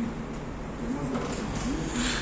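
A person's low voice making a few short murmured sounds over steady background noise.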